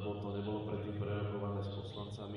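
A man speaking in a low, level monotone.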